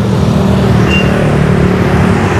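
Steady low rumble of motor vehicle engines and road traffic running close by.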